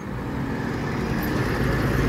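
Garbage truck driving past at close range, its engine and tyre noise getting louder as it comes alongside.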